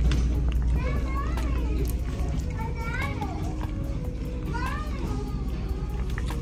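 Children's voices, a few short high calls, over background music and a steady low hum.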